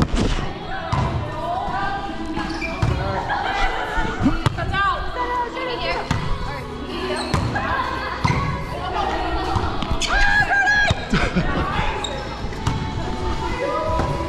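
Volleyball rally in a large gym: a serve followed by repeated sharp hand-on-ball strikes and ball thumps, each ringing briefly in the hall.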